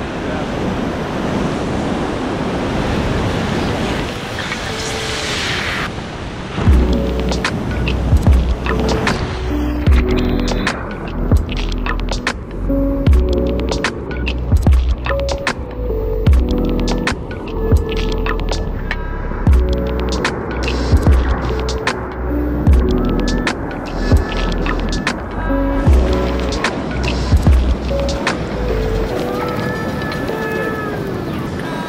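Rushing whitewater of a large river rapid for about the first six seconds, then background music with a heavy, repeating bass beat, short pitched notes and crisp percussion takes over and stays the loudest sound.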